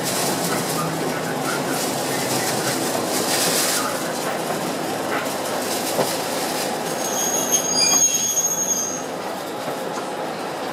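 Yoro Railway electric train running with a steady rumble, heard from inside its rear cab as it slows into a station. About seven seconds in, a high-pitched squeal sets in for a couple of seconds as it brakes.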